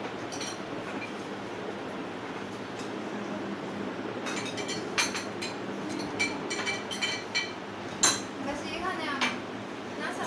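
Spoons and cutlery clinking against glass serving bowls and plates, a scatter of sharp clinks through the second half, the two loudest about five and eight seconds in, over low background chatter.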